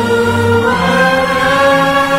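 Music: a choir singing long held chords, moving to a new chord about two-thirds of a second in.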